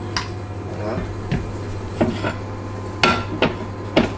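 Kitchen pans and utensils knocking and clinking: about six short, sharp knocks spread over a few seconds, over a steady low hum.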